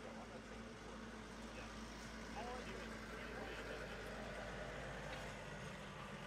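Faint outdoor background: a steady low rumble with faint distant voices, and no clear hoofbeats.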